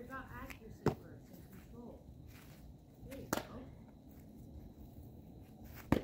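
Baseball smacking into leather gloves during a game of catch: three sharp pops about two and a half seconds apart as the ball goes back and forth.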